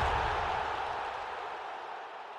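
Reverberant tail of a booming whoosh sound effect, fading away steadily with no new strokes.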